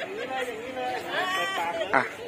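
People talking: indistinct chatter of voices, with a short, sharp knock just before the end.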